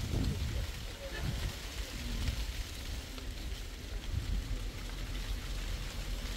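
Outdoor ambience in a garden: a steady hiss with a low rumble underneath and faint, distant voices now and then.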